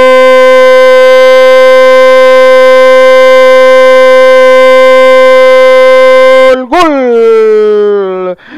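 A football commentator's drawn-out goal shout, "¡Gol!", one vowel held very loud at a steady pitch for about six and a half seconds, marking a goal just scored. It breaks off, and a second shout starts high and falls in pitch near the end.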